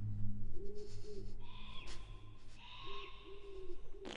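A bird hooting low, several short arched calls in a row, over a steady low hum that fades out after about three seconds. Two brief higher whistling tones come in around the middle.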